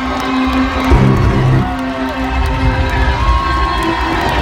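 Live band playing loud amplified music, with a strong sustained bass and drums, and a crowd cheering over it.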